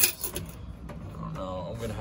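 A click at the start, then faint handling of the sheet-metal coin box inside a Key Master arcade cabinet as it is pulled at by its handle, with a brief murmured voice about one and a half seconds in.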